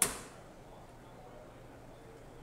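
A single sharp knock of a hard object right at the start, dying away in a short ringing tail in the reverberant church, then only faint room hum.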